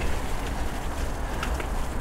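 Bicycle riding over a grassy dirt path: a steady rushing noise with a low rumble from tyres and wind on the handlebar camera, and a couple of faint ticks about one and a half seconds in.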